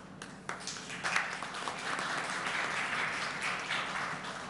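Audience applauding: a few scattered claps that swell into full applause about a second in, still going strong near the end.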